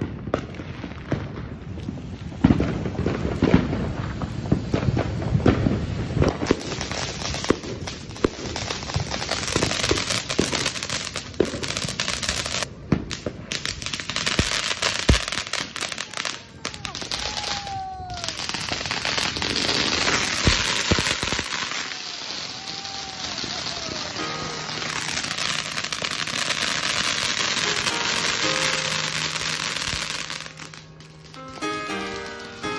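Consumer ground firework spraying sparks, with continuous dense crackling and hissing and clusters of sharp pops, loudest in the first several seconds. A few short whistles sound through the middle.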